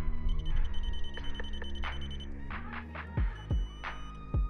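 Digital torque adapter beeping rapidly for about two seconds, signalling that the bolt has reached its set torque, over background music with a beat.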